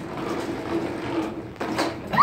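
Plastic wheels of a toy shopping cart rolling over a hard floor as it is pushed with a child aboard, a steady rumble with a couple of knocks near the end.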